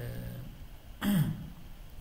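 A man's voice between sentences: a short held 'uh', then about a second in a brief throat clearing that falls in pitch.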